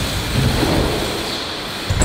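BMX bike tyres rolling over a plywood ramp, a steady rumble that eases off slightly as the rider climbs the wall.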